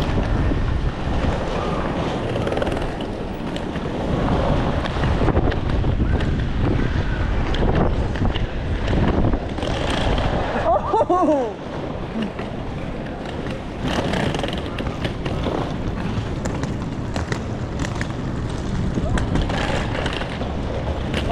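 Strong gusty wind buffeting the phone's microphone, a continuous rumbling rush that rises and falls.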